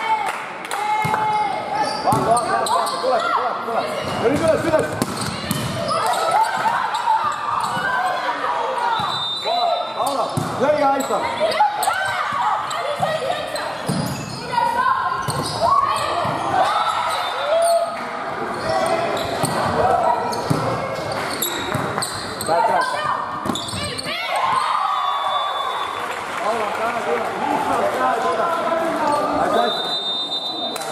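Volleyball being served and struck during rallies, the hits of the ball echoing in a large hall, with voices of players and spectators throughout.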